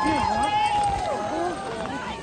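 Sled dogs whining: long, high, nearly level cries that overlap one another, with people talking close by.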